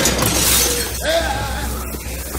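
Loud shattering crash of a restroom fixture breaking as a head is smashed into it, the crash dying away over about a second, followed by a man crying out in pain.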